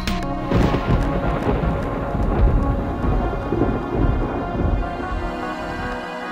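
A long, low rumble with a noisy wash, starting about half a second in and fading out over several seconds, laid over music with steady sustained tones.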